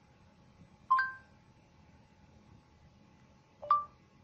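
Google voice-input prompt tones from a smartphone: two short two-note electronic beeps, one about a second in and one near the end, as the speech recogniser listens for a voice command.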